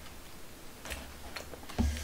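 A few light clicks about half a second apart, with a dull thump near the end.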